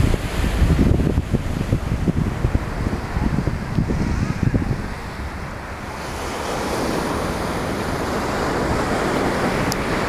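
Surf breaking and washing up a sandy beach, with wind buffeting the microphone in gusts through the first half. After about six seconds the wash of the surf settles into a steadier, fuller hiss.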